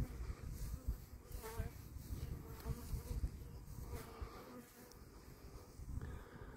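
Honeybees buzzing faintly around their hives, with one bee passing close about a second and a half in, over a low, uneven rumble.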